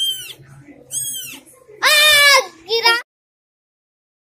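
Newborn kittens mewing: four short, high-pitched cries, the longest about two seconds in, cut off suddenly about three seconds in.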